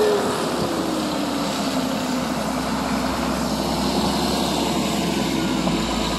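Tracked bulldozer's diesel engine running under load as it pushes a bladeful of snow into a snow-melter pit, with a whine that falls in pitch over the first two or three seconds.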